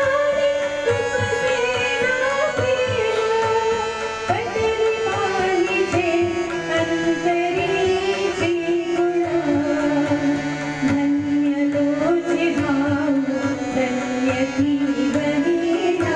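A woman singing a slow, gliding Indian melody over a steady hand-drum rhythm, with the sung line sliding gradually lower through the passage.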